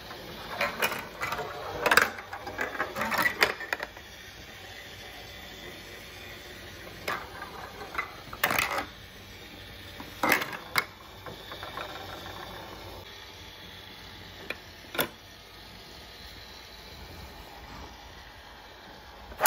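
Marbles clattering through a plastic VTech Marble Rush track: a quick run of clicks and knocks in the first few seconds, then scattered single clicks and short rattles as marbles drop and roll through the pieces.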